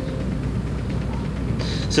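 A steady low droning rumble with a fine rapid flutter in it, the kind of ominous low drone used in a trailer's soundtrack.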